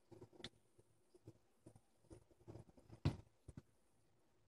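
Faint irregular clicks and taps of a small plastic face trimmer and its metal clipper blades being handled and fitted back together, with one sharper click about three seconds in.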